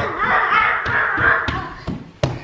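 A person's voice making a drawn-out non-word vocal sound, with a few soft low thumps.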